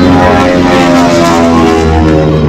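Propeller airplane engine running at high power during a low aerobatic pass, with a steady, many-toned engine drone.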